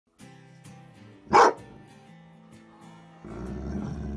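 A dog barks once, loudly, about a second and a half in, over a short music bed. The music gives way to a low steady rumble near the end.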